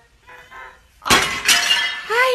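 Something breaking with a sudden crash about a second in and a second sharp hit half a second later, followed by clattering, like glass shattering.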